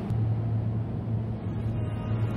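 A steady low droning hum.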